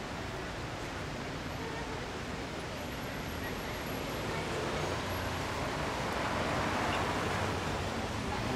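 Street traffic noise, a steady hum that swells as a car goes by, loudest around six to seven seconds in.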